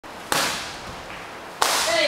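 Two kicks striking a hand-held kick paddle, each a sharp slap, about a second and a half apart.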